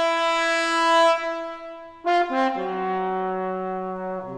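Solo trombone holding one long high note that swells and then fades about two seconds in. It then plays a few quick notes stepping down to a lower held note.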